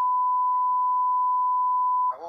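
A single steady, unbroken censor bleep, a pure beep tone laid over speech to mask swearing.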